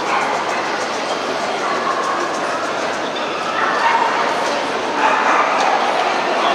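A dog barking several times over the talk of people in the hall.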